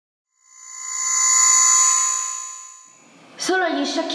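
A bell-like chime of many ringing tones that swells up out of silence and fades away over about two and a half seconds. A woman starts speaking near the end.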